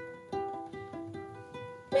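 Ukulele played quietly on its own, a few plucked chords about two a second, each ringing on until the next.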